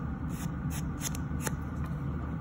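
Sponge nail buffer block rubbing across fingernails in quick short strokes, about six or seven in two seconds, over the steady low hum of a nail dust collector fan.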